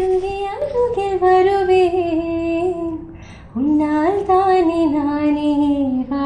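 A woman singing unaccompanied: two long phrases of held, gently wavering notes, with a short pause for breath about halfway through.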